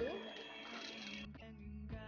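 Hanabishi electric hand mixer running steadily, its beaters whisking thin egg, sugar and melted-butter cake batter in a stainless steel bowl, under background music.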